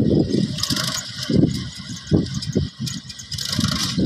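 Farm tractor running under load as it pulls a tilling implement through dry soil, its engine sound broken up by uneven low buffeting that swells and fades every half second or so.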